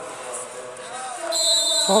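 A referee's whistle, one long steady blast starting a little past halfway through, over faint voices in the background.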